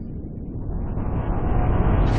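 A deep, noisy rumble that builds steadily in loudness, a produced whoosh-like sound effect rather than a recorded engine.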